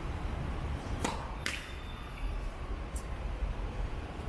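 Tennis serve: the racket strikes the ball sharply about a second in, then a second sharp knock follows half a second later and a fainter click comes near three seconds. A low steady rumble runs underneath.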